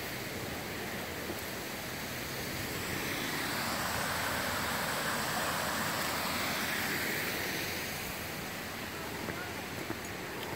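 Steady rush of a small waterfall, water cascading over rock ledges in a creek, growing louder for a few seconds in the middle.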